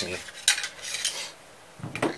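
Metal parts of a disassembled gun clinking and rattling against each other, a few sharp clicks about half a second in and a short rattle after.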